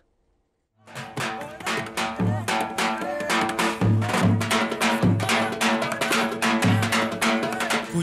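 A large Turkish davul bass drum beaten in a lively dance rhythm under a held, reedy wind-instrument melody: davul street music. It starts about a second in, after a moment of silence.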